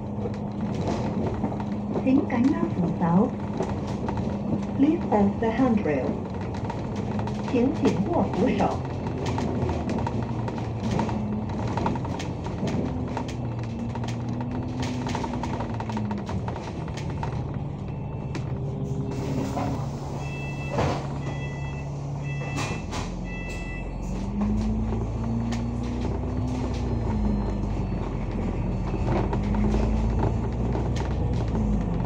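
Interior of an Alexander Dennis Enviro500 MMC double-decker bus: its engine and driveline whine rise and fall in pitch as the bus speeds up and slows, then settle to a steady lower idle while stopped before pulling away again. A few short high beeps sound during the stop.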